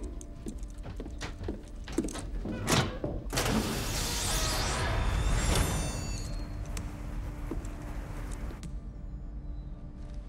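Inside a moving train: a steady low rumble and hum, with a run of sharp metallic clanks in the first few seconds. A rush of hissing noise then swells through the middle, with brief high squeals at its peak, before the sound settles back to the rumble.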